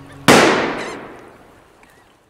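A single sharp thunderclap about a quarter second in, its crack dying away gradually over about a second and a half.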